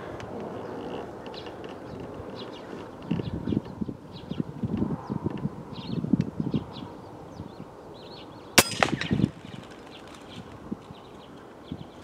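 A single shot from an FX Impact X .22 PCP air rifle firing a slug, a sharp crack about two-thirds of the way through with a short ringing tail. Before it, small birds chirp.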